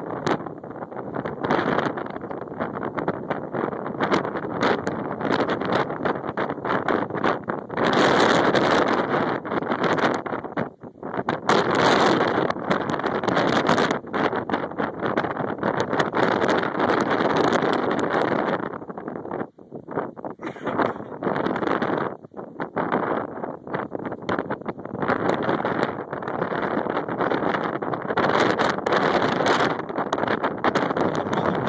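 Wind buffeting the microphone outdoors: a loud, irregular rushing that swells and eases in gusts, dropping away briefly about twenty seconds in.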